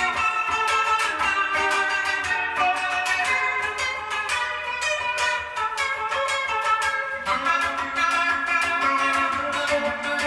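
Electric guitar with humbucker pickups played live through a small Line 6 Spider IV 15-watt amp, picking a quick run of single notes. A low note is held from about seven seconds in.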